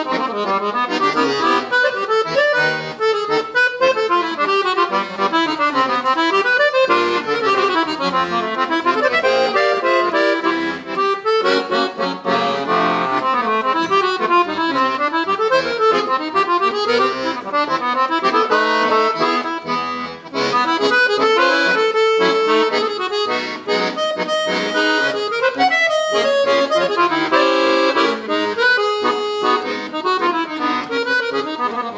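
Victoria piano accordion played solo: a quick, running melody over held chords, with one brief break about two-thirds of the way through.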